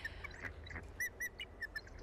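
Bald eagle giving a few short, high chirps, two clear ones about a second in, over a faint steady low rumble of wind or background noise.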